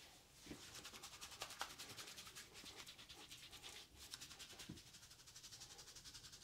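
Fingertips scrubbing lathered hair and scalp during a shampoo: faint, quick rubbing strokes, several a second, in an even rhythm.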